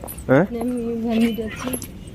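A person's voice: a short "haan", then a hum held on one steady note for about a second.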